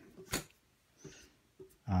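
A deck of playing cards set down on a wooden tabletop: one short tap about a third of a second in, then a faint rustle of card handling. A man's hummed 'um' begins at the very end.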